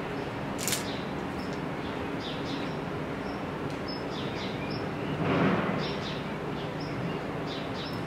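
Small birds chirping in short, high calls over a steady background noise. A brief louder rush of noise comes about five seconds in.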